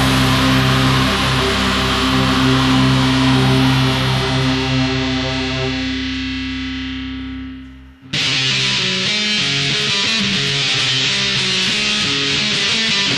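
Black metal track with a sustained, heavily distorted electric guitar chord that rings and slowly fades out. It drops to a brief near-silent gap about eight seconds in, then distorted guitars crash back in at full level.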